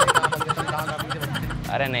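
A man laughing: a loud burst of quick, evenly spaced ha-ha pulses through the first second or so, over a steady hum of street traffic.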